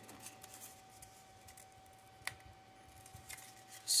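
Faint crinkling and creaking of a cardboard toilet paper tube being bent and creased by hand, with one sharp click a little past halfway.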